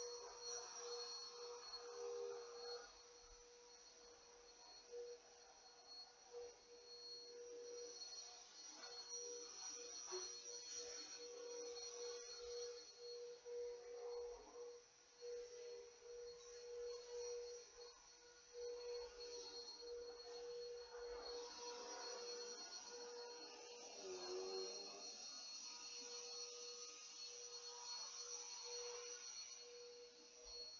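Quiet room tone with a faint steady electrical whine, under soft intermittent rustling such as yarn being worked.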